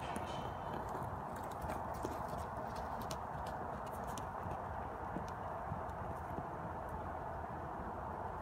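Horse's hoofbeats on the dirt footing of a riding arena, irregular clicks and thuds over a steady background hiss.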